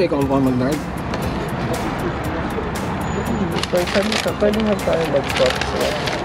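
People talking in brief snatches over a steady hum of traffic, with background music.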